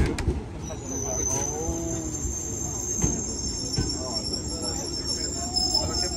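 A Fujikyuko train pulls into the platform with a low running rumble. A high-pitched brake squeal sets in about a second in and dies away near the end as the train comes to a stop.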